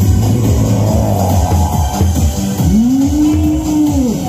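Loud electronic dance music with a heavy, steady bass beat. About three seconds in, a tone slides up and holds, then falls away at the end.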